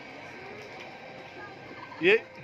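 Low, steady murmur of an outdoor crowd with no music playing: the pause in a game of musical chairs.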